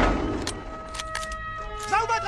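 Battle-film soundtrack: a loud rumble dies away at the start, then a few sharp clicks over held music notes, and a man's voice begins near the end.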